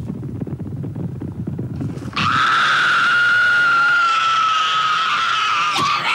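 Played-back drama soundtrack: a low rumbling sound for about two seconds, then a single high held note that starts abruptly and sinks slightly in pitch over the next four seconds.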